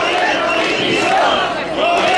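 Large protest crowd shouting a slogan together, many voices rising and falling in a chant.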